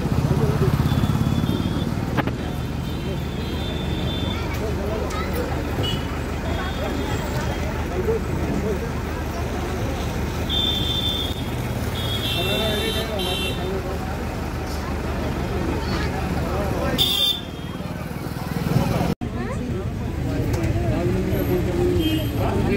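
Bus engine idling with a steady low rumble, with several short high-pitched horn toots around the middle.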